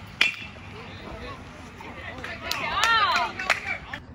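One sharp, loud smack of a baseball just after the start, at the plate. From about two and a half seconds in, spectators call out loudly for about a second, over steady crowd chatter.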